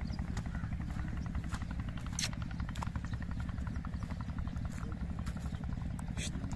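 An engine running steadily with a rapid, low thumping, and a few sharp clicks over it.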